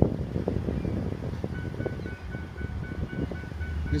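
Low, steady rumble of a car's running engine heard from inside the car, with wind on the microphone. Faint steady high tones come in about a second and a half in.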